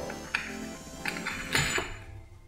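Background music, with a couple of light metallic clicks as a steel entrance door's lever handle is pressed and released.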